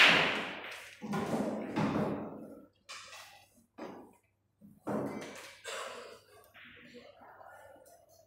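A pool ball dropping into a corner pocket with a loud, sharp thunk right at the start, fading over about a second. Several softer knocks and murmured voices follow.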